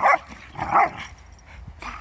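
Dogs play-fighting, with two loud, short barks in the first second and a fainter one near the end.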